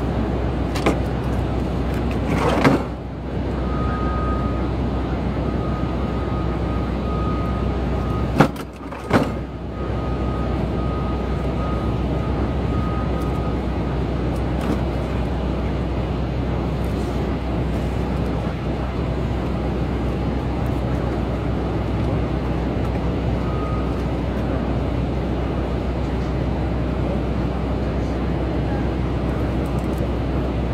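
Steady city street traffic noise with a constant low hum, broken by short knocks with brief drop-outs about three and nine seconds in.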